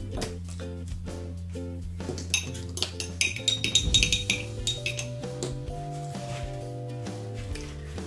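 Background music of held notes throughout; from about two to four and a half seconds in, a run of light clinks as metal watercolour paint tubes are picked through and knocked together on the table.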